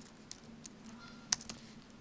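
A few scattered presses on a computer keyboard, faint, with the sharpest click just over a second in.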